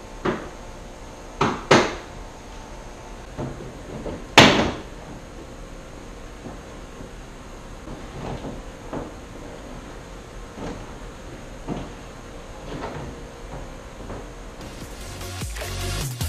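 Sharp knocks and clacks from working a car's front bumper cover and its fasteners loose: a few strong ones early, the loudest about four and a half seconds in, then fainter scattered knocks. Music comes in near the end.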